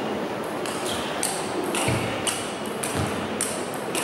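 Table tennis rally: the ball is struck by the players' rubber-covered paddles and bounces on the table, giving a quick series of sharp clicks, roughly three a second.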